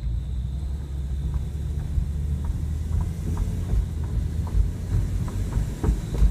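Steady road and engine rumble inside a moving 2004 Lexus IS300, with faint short chirps recurring roughly once a second.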